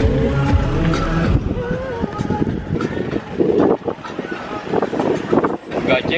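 Car running along a road, heard from inside the cabin as a low rumble under people talking; music runs on for about the first second and a half, then stops.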